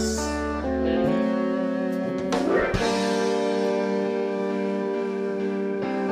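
Live band playing an instrumental passage with no singing: sustained guitar chords with light drums, the chord changing about a second in and again around two and a half seconds in.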